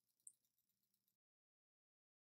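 Near silence, with a single faint click shortly after the start.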